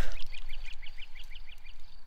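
Water splashing around a landing net at the start, followed by a bird calling a quick, even series of about ten short, high chirps.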